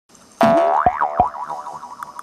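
Cartoon 'boing' sound effect from an animated logo intro: a springy tone that starts suddenly about half a second in and wobbles up and down in pitch as it dies away. Two soft thuds fall under it.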